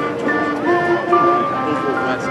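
Marching band playing a melody of held notes that change every few tenths of a second, with people talking nearby.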